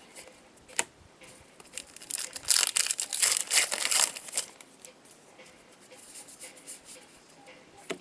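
A trading card pack wrapper being torn open and crinkled, a dense crackly stretch of about two seconds in the middle, after a single sharp click. Cards are shuffled and handled faintly afterwards.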